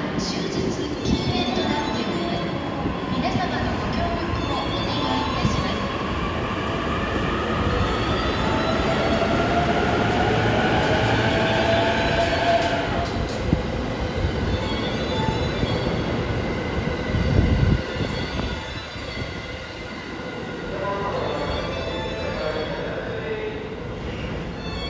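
E233 series 3000 electric multiple unit pulling out of the station, its traction motors giving a rising whine as it gathers speed, over wheel and rail noise. A brief loud low rumble comes about two-thirds of the way in, and near the end a falling tone as the drive eases off or another train brakes.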